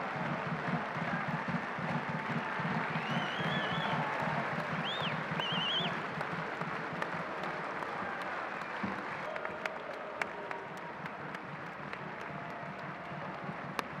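Football crowd applauding in a stadium, with a few high, wavering whistles about three to six seconds in. The applause thins in the second half, leaving individual claps standing out.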